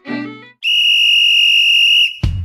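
A whistle blown in one long, steady blast lasting about a second and a half, starting about half a second in.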